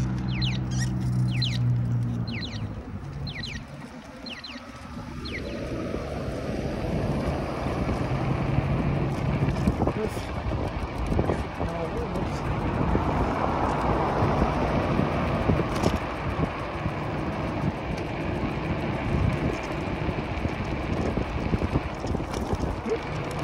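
E-bike ride with wind rushing over the microphone and road noise, building as the bike gets up to speed from about four seconds in and then staying steady. At the start a steady low hum stops about two and a half seconds in, and a few short high chirps are heard.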